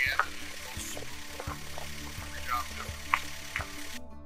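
A steady outdoor hiss scattered with small ticks and a few brief higher sounds, under faint background music.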